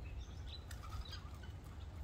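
Faint, scattered bird chirps over a low steady rumble.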